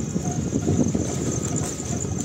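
Crickets chirping in a steady, evenly pulsing high trill, under a louder, jumbled low rumble of unclear source.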